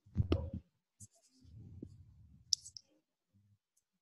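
A few sharp clicks and muffled low bumps, the loudest right at the start.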